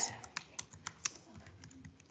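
Typing on a computer keyboard: a run of quick, unevenly spaced keystrokes.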